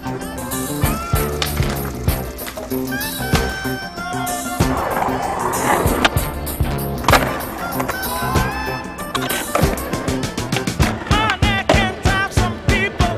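Skateboard sounds, wheels rolling on concrete and sharp clacks of the board popping and landing, mixed with a music track that runs throughout.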